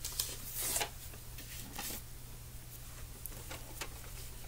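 Soft scraping and rustling as a tin of Prismacolor Premier colored pencils is picked up and handled. There are a few short strokes in the first two seconds and fainter ones near the end.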